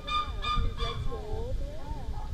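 Bird giving a quick run of short, honking calls in the first second, followed by lower, wavering calls, over a low outdoor rumble.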